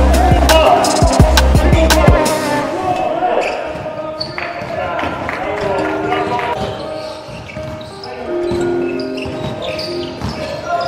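Music with a heavy bass beat, which stops about two to three seconds in. After that come the sounds of an indoor basketball game: a ball bouncing on a hard gym floor, and players' voices.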